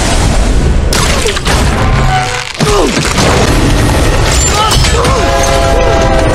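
Action-film soundtrack: booms and crashes over music, with snatches of voice. The sound dips briefly about two and a half seconds in, then comes back with a falling sweep in pitch.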